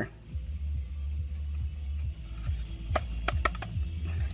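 Small metal screws and a screwdriver being handled while a plastic radio-dish adapter housing is unscrewed, with a quick run of sharp clicks about three seconds in, over a low steady rumble.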